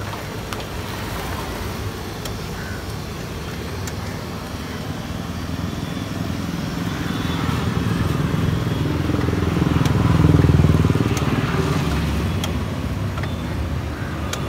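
Street litter vacuum cleaner running steadily while its hose nozzle sucks up roadside litter, with occasional sharp clicks. A low engine rumble swells up around ten seconds in and then fades.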